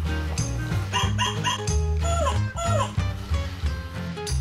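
Background music with a steady bass beat, over which a barking toy Pomeranian gives three quick high yaps about a second in, then two longer yelps that fall in pitch.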